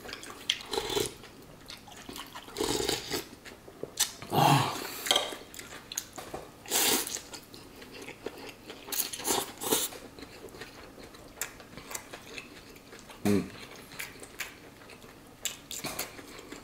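A person slurping pho rice noodles and chewing, in irregular bursts every second or two. A brief low hum comes near the end.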